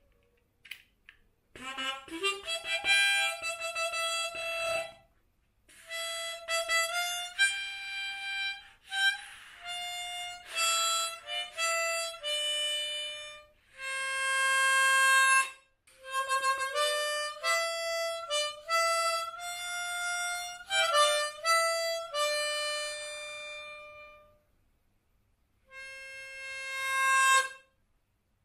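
Freshly cleaned and reassembled harmonica being test-played: a run of changing notes, some held, starting about two seconds in, then a short pause and one last held note near the end.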